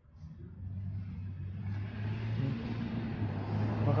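A motor vehicle passing: a low engine hum comes in about half a second in, with a rushing tyre-and-road noise that builds and is loudest near the end.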